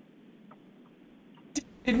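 Faint steady hiss of an open microphone line on a video call, broken by a single short click about a second and a half in, followed right at the end by a woman starting to speak.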